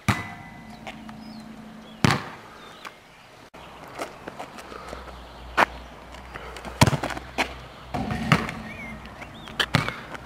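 Several sharp thuds of a football being kicked and bouncing on an asphalt court, spaced a second or more apart. The first thud has a short ring after it.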